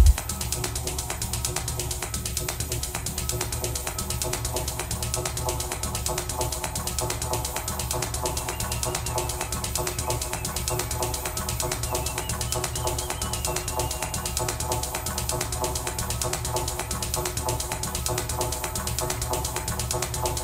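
Live techno in a breakdown: the kick drum and bass cut out at the start, leaving a fast, dense clicking percussion loop over a held synth chord.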